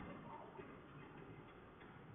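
Near silence: faint cabin noise from a car driving along a road.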